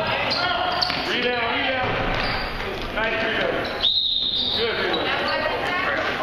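Basketball game in a gym: a ball dribbled on a hardwood court amid shouting voices that echo in the hall, with a short high whistle about four seconds in.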